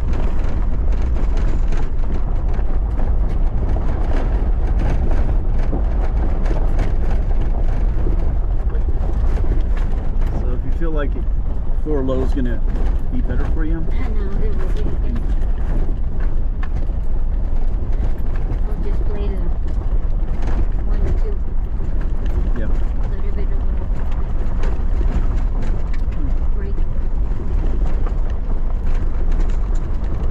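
Four-wheel-drive vehicle driving over a loose gravel road: steady engine and tyre noise with a heavy low rumble and constant small rattles and knocks from the stones.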